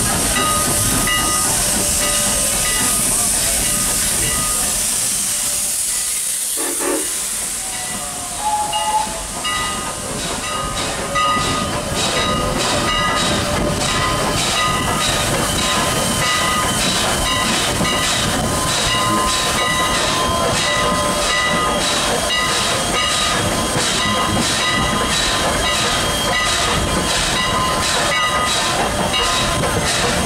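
Canadian National No. 89 steam locomotive close by, with a steady hiss of escaping steam. About ten seconds in, a regular beat of a few strokes a second joins the hiss and continues.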